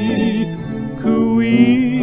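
1940s dance-orchestra record playing: long held notes with a wavering vibrato over a steady bass line, swelling fuller about a second in.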